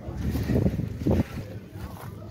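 Side-hinged rear door of a Mitsubishi Pajero being unlatched and swung open, with a thud about a second in, and wind on the microphone.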